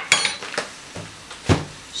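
Kitchen utensils knocking against a stainless saucepan and the counter while flour is added to a roux for béchamel: a sharp clink at the start, a quick rattle of small knocks, and one heavier knock about a second and a half in.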